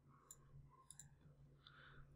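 Near silence, broken by a few faint computer mouse clicks.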